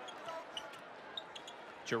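Basketball being dribbled on a hardwood court, a few faint thuds, under a low, steady arena crowd murmur.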